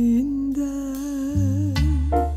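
A woman sings a slow, held melody line with a gentle vibrato over an electric bass guitar. The bass moves to new low notes near the end.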